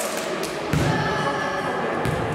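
Echoing sports-hall din of girls' voices with a dull thud about three quarters of a second in.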